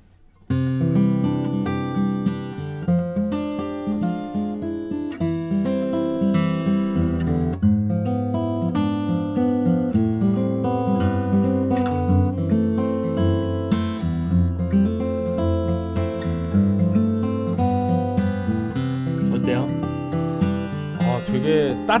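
Taylor AD27 mahogany acoustic guitar played fingerstyle: picked notes over low bass notes, starting about half a second in and running on without a break.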